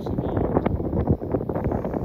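Wind buffeting the microphone in an uneven low rumble.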